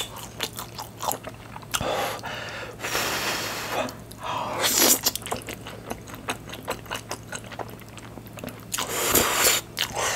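Close-miked eating of spicy Buldak stir-fried noodles with corn and cheese: wet chewing and mouth clicks throughout, broken by a few longer noisy slurps of noodles, the last one near the end.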